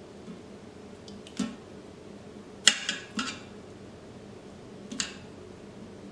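Kitchen tongs clacking against a stainless steel pressure-cooker inner pot while chicken thighs are moved around in sauce: a handful of short sharp clicks, the loudest about two and a half seconds in with two quick ones after it, and another near the end.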